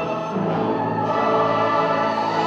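Choir singing with an orchestra: held chords that change about half a second in and again about a second in.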